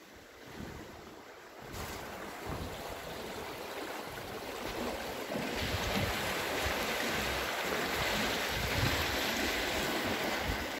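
Water rushing through a concrete outflow canal below a reservoir dam. It is a steady noise that comes in about two seconds in and grows louder about halfway through.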